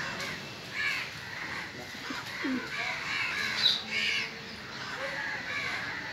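Crows cawing repeatedly, a string of short harsh calls spaced about half a second to a second apart, the loudest about two-thirds of the way through.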